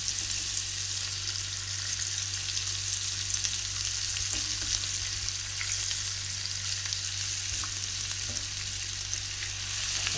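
Hot oil and spice sauce sizzling steadily in a pan as crumbled boiled potatoes go into it, with a steady low hum underneath.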